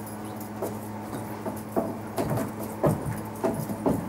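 Ankle boots stepping and stamping on a wooden deck while dancing: irregular knocks, several in the second half. A steady low hum runs underneath.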